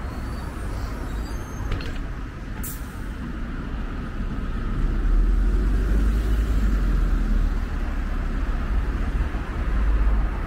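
City bus idling at a stop amid street traffic, with one short hiss of compressed air from its air system about two and a half seconds in. From about five seconds the low rumble of passing road traffic grows louder.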